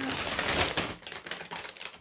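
A thin plastic carrier bag crinkling and rustling as it is handled: a dense run of crackles, thickest in the first second and thinning out toward the end.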